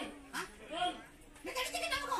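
A woman's voice in several short, wavering cries, mixed with speech.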